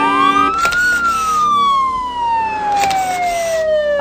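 Game-show siren sound effect: one police-style wail that rises quickly in pitch for about a second, then falls slowly. It opens with a short steady electronic chord and carries two brief bursts of hiss. It marks the losing 'Saher' (traffic camera) card being revealed.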